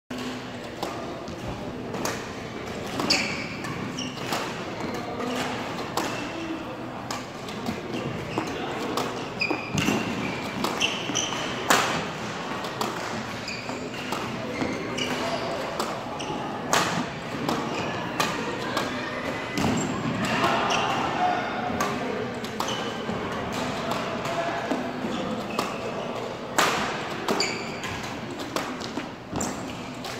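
A badminton shuttle-feeding machine firing shuttlecocks and a racket striking them back. The sharp hits come irregularly, about one or two a second, in a reverberant hall.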